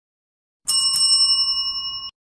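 Notification-bell ding sound effect from a subscribe-button animation: a bright bell strikes about two-thirds of a second in, with a second tap just after. It rings on in a few steady high tones, the top ones fading, and cuts off suddenly at the end.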